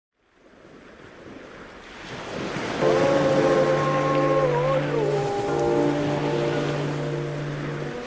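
Sea waves fading in, joined about three seconds in by held music chords that carry on with one change of notes midway.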